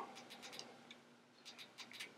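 Faint clicking from a Rigiet handheld gimbal's handle as its follow-mode switch is moved: a few quick clicks just after the start and another few near the end.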